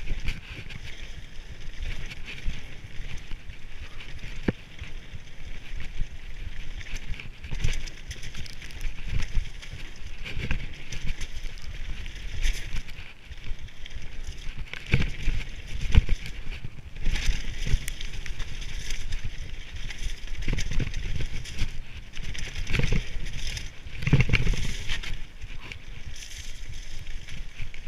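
Mountain bike riding fast down a rough gravel and rock trail: tyres crunching over the surface, the bike rattling, and knocks over bumps, with wind rumbling on the camera microphone.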